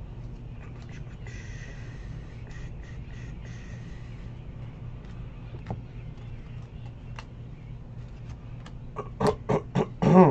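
Baseball trading cards being flipped through by hand: faint sliding rustle and soft clicks over a steady low electrical hum. Near the end, four short, loud bursts of voice in quick succession.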